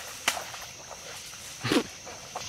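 Steady high-pitched insect chorus, with a sharp click about a quarter second in and a short, louder sound near the end.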